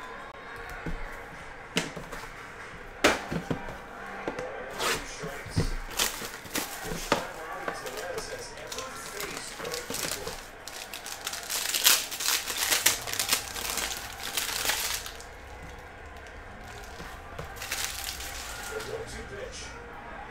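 Crinkling and rustling of clear plastic card sleeves and a silver foil trading-card pack wrapper being handled and peeled open, a series of sharp crackles that grows into a dense burst of crinkling a little past the middle.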